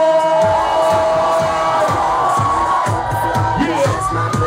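Loud live dance music in a club, with a crowd cheering over it. A long held note glides slowly over a beat that is missing for about the first half-second and then comes back in.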